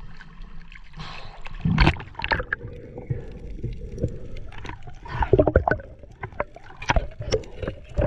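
Water lapping around a camera at the sea surface, then a loud splash as the diver ducks under. After that come muffled underwater sounds: many short clicks and knocks.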